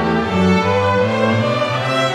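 A string orchestra of violins, violas and cellos playing bowed, sustained chords that shift every half second or so.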